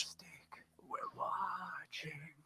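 A pause in speech, near silent at first, then a faint, low voice murmuring or whispering for about a second.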